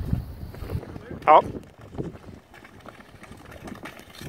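Tour skates gliding and scraping over natural lake ice, with faint scattered clicks and wind on the microphone.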